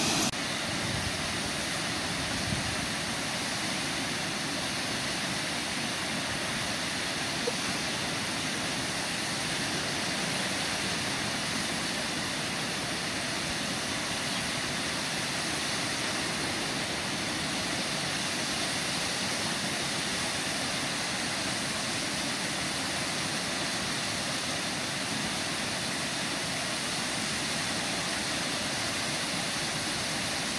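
Water pouring over a small river weir: a steady, even rush.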